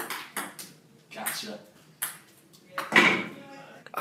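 Ping-pong ball clicking off paddles and table during a rally, a few sharp hits roughly a second apart, the loudest about three seconds in.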